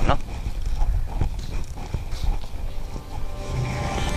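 Footsteps on a hard path: a few separate steps, roughly a second apart.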